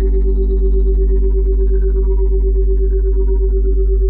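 Synthesized meditation drone: a deep steady hum under stacked sustained tones, with one mid-pitched tone pulsing quickly and evenly, the beating of a monaural-beat brainwave track.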